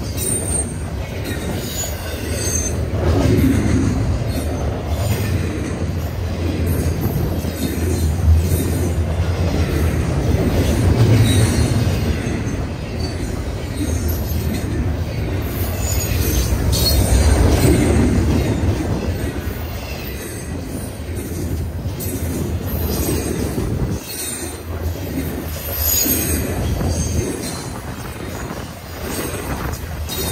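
Double-stack intermodal container train rolling past at speed: a steady rumble and clatter of steel wheels on rail that swells as each car's trucks go by, with faint high-pitched wheel squeals now and then.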